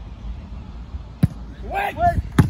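A football struck once for a corner kick, a single sharp thud about a second in, followed near the end by a shout from someone on the pitch.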